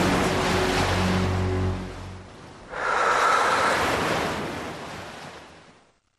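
A full, even rushing noise over low held music notes, which stop about two seconds in. The rush dips, swells up again near three seconds, and then fades out to silence.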